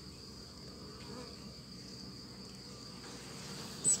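Steady hum of honeybees over an open hive full of bees, with a continuous high-pitched cricket trill above it.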